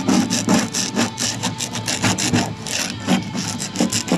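Hand scraper dragged in quick repeated strokes across a van's body panel, about three strokes a second, scraping off paint softened by a caustic chemical paint stripper.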